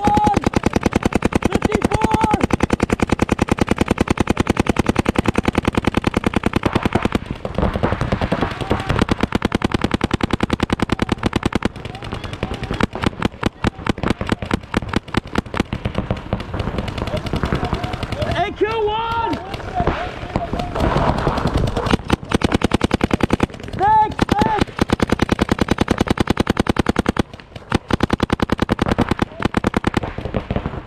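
Paintball markers firing in long, rapid strings of shots, many per second, with only short breaks. Shouted calls between players come through in places.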